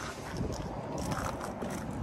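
Steady wind noise on the phone's microphone outdoors, with faint rustle from handling.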